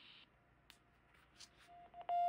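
Near silence, with a couple of faint clicks from handling a Quansheng UV-K5 handheld radio. A faint steady beep from the radio begins near the end as its side button is held for the CW CQ call.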